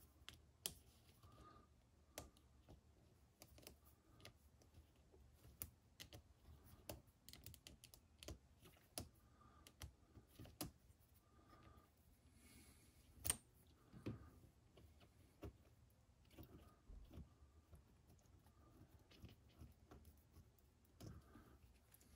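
Faint, scattered clicks and taps of small plastic RC truck parts being handled and popped apart by hand, from the front steering assembly of a 1/18-scale Losi Mini-T 2.0. One sharper click stands out about halfway through.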